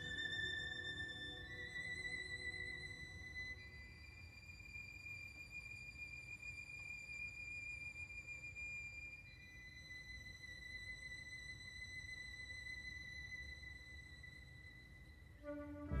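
Solo violin playing quietly in long held high notes, stepping up twice early on, holding the top note for several seconds, then settling a step lower. Just before the end the orchestra comes in, much louder.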